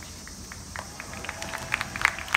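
Spectators clapping in the stands: scattered hand claps start about a second in and grow quicker and louder toward the end, over the steady hum of the ballpark.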